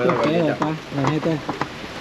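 A man laughing in short voiced bursts that grow shorter and fade out near the end, over a steady hiss.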